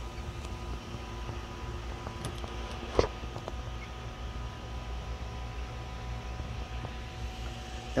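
Steady low hum of a small USB fan running, with one sharp click about three seconds in as the hutch's plastic grid lid is opened.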